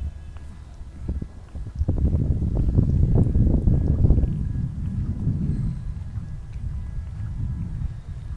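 Wind buffeting the microphone as a low rumble that swells for a couple of seconds in the middle, over the irregular footsteps of someone walking on paving.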